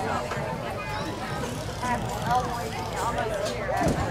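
Indistinct talking from several people at once, spectators' and players' voices overlapping without clear words.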